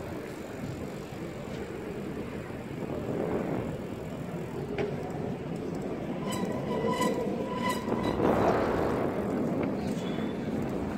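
Wind rushing over the phone's microphone, with the hum of tyres, as a bicycle rolls along a paved road. Between about six and eight seconds in, a few short high tones repeat, and a louder gust follows.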